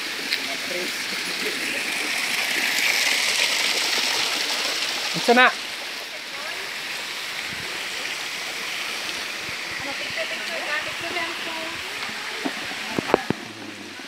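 Water pouring from a small man-made cascade over a stone wall into a concrete channel: a steady rushing splash, loudest over the first five seconds and fainter afterwards.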